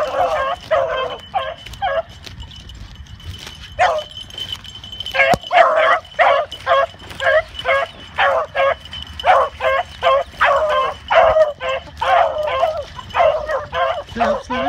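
Beagles barking and baying in quick repeated calls while running a rabbit, with a lull early on before the calls pick up again at about two a second.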